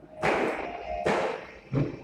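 Three loud thumps, under a second apart, with music starting faintly behind them.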